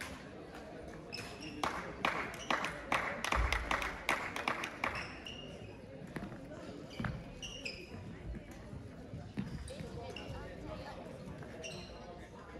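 Sports-hall badminton sounds: sharp racket-on-shuttlecock hits and shoe squeaks on the court floor, with a dense run of quick hits about two to five seconds in and scattered squeaks afterwards. Voices murmur in the background.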